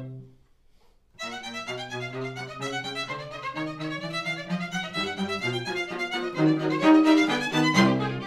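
String quartet of two violins, viola and cello. After a brief near-silent rest, the first violin comes in about a second in with a fast run of short, bouncing spiccato notes over lower sustained notes from the cello and viola. The ensemble grows louder to a forte peak near the end.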